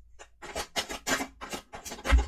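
A quick, irregular run of dry scraping and clicking strokes, tarot cards being handled on the table.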